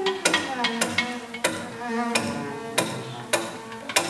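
Live stage music: about seven sharp percussive strikes, roughly one every half second or so, each ringing briefly, over sustained low string tones.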